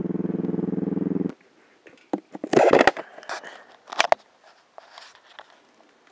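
Motorcycle engine running steadily while the bike is ridden, stopping abruptly a little over a second in. After that come a few short knocks and rustles, the loudest about two and a half seconds in.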